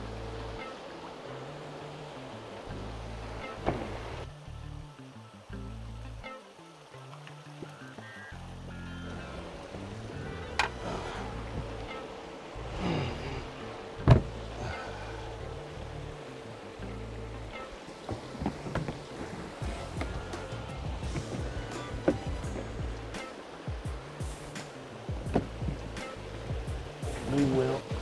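Background music with a stepping bass line, with scattered sharp knocks and thumps of plastic storage bins being set down and stacked, the loudest about 14 seconds in and more frequent near the end.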